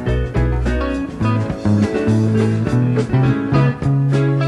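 Live rock band playing an instrumental passage: electric guitar over a walking bass line and steady drums.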